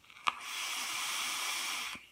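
A long draw on an e-cigarette: a short click about a quarter second in, then a steady airy hiss of air pulled through the atomizer for about a second and a half, cutting off suddenly just before the end.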